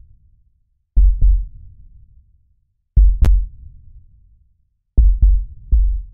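Deep, booming double thumps like a slow heartbeat, one pair every two seconds. Each dies away over about a second, with silence between them. These are sound-design bass hits in a soundtrack.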